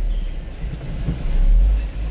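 Low rumble of a vehicle moving slowly, heard from inside the cab, swelling about a second and a half in.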